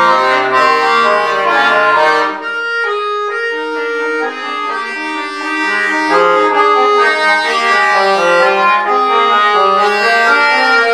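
Bayan (Russian chromatic button accordion) played solo, several voices of held notes moving against each other. About two and a half seconds in the low bass notes drop out and the playing turns quieter, then fills out again with bass a few seconds later.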